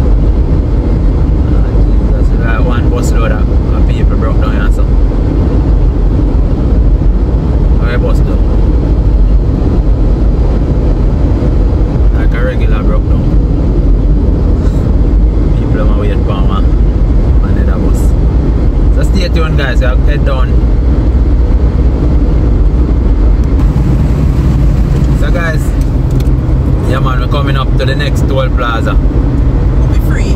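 Steady road and engine noise inside a car cruising at highway speed: a loud, low rumble with no breaks. Faint voices come and go over it.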